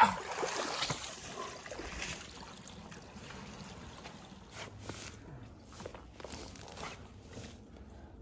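Shallow creek water splashing and sloshing around a person wading and working with their hands in it, loudest in the first couple of seconds. It then fades to a faint steady outdoor background with a few light rustles.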